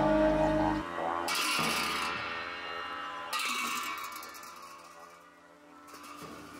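Tibetan Buddhist ceremonial music: dungchen long horns drone low and stop about a second in, followed by two crashes of hand cymbals, the second near the middle, each ringing out and slowly fading.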